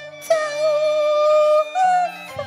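Cantonese opera music: a high melody line holds one long note with a slight wobble, then steps up to a higher note near the end, over a low steady accompaniment.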